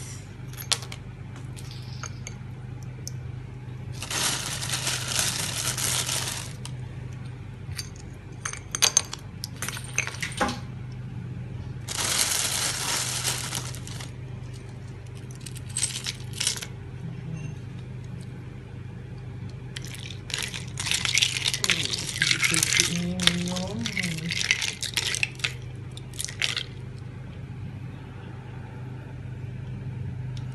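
Ice cubes clinking and rattling against a cup as they are dropped into a pineapple drink, with two longer rattling runs early on and a busy flurry of clinks past the middle, over a steady low hum.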